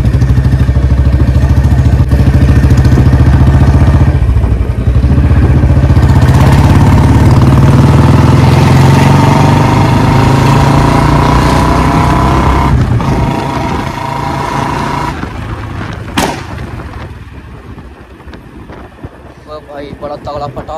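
Royal Enfield Bullet 350's single-cylinder engine running under way, its note slowly rising with speed. Then the throttle closes and the engine sound drops away. About 16 seconds in there is a single sharp exhaust pop, a backfire that the rider calls a 'pataka' (firecracker).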